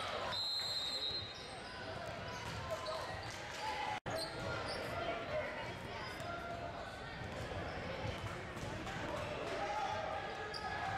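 Basketball dribbled on a hardwood gym floor, with indistinct voices of players and spectators echoing in a large gym; the sound cuts out for an instant about four seconds in.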